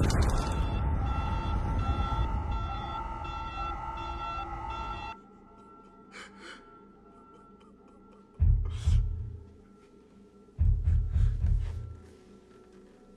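Film sound mix: a pulsing alarm tone, beeping about every two-thirds of a second over a low rumble, which cuts off suddenly about five seconds in. After a quiet stretch, deep low hits of the film score come in twice in the last four seconds.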